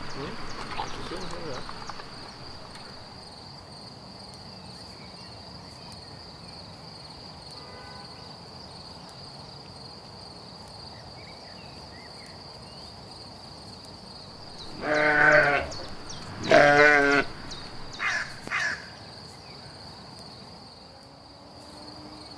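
Lambs bleating: two loud calls about a second apart, the second with a quavering, wavering pitch, then two short fainter calls. A steady high insect trill runs underneath.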